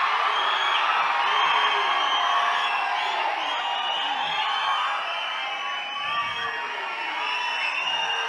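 Large audience cheering and whooping, many voices shouting at once in a steady din that eases a little in the second half.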